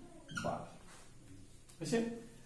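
A man's voice: a short drawn-out vocal sound falling in pitch about half a second in, then a quiet pause, then a spoken word near the end.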